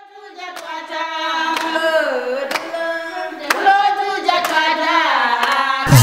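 A group of women singing together, with hand claps about once a second; the song fades in at the start.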